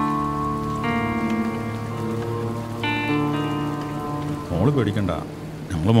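Steady rain falling under a background score of long held chords that change twice. A voice comes in near the end.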